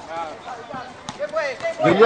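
Men's voices talking and calling out, with a couple of brief sharp knocks.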